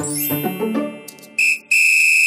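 Cartoon whistle sound effect: a short high whistle tone, then a longer one held on the same pitch, after a high falling sweep as children's music fades out.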